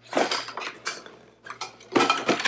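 Small plastic kit pieces clattering and rustling as hands rummage in a cardboard box. A burst of rattling comes near the start, then a few light knocks.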